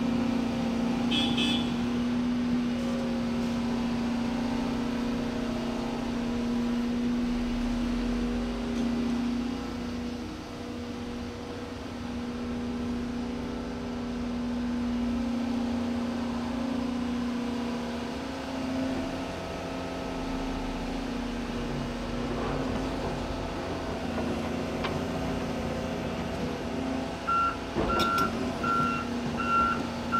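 Volvo EC 300E excavator's diesel engine running steadily under hydraulic load as it dumps a bucket, swings and digs, its hum wavering a little in pitch. Near the end a reversing alarm beeps at an even pace, about five times, with a couple of sharp knocks.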